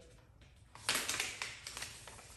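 Trigger spray bottle spraying slip solution (baby-shampoo soapy water): a sudden hissing spray about a second in that fades over half a second, followed by a few short clicks.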